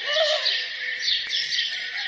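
Many small birds chirping and twittering together, a steady dawn-chorus sound effect.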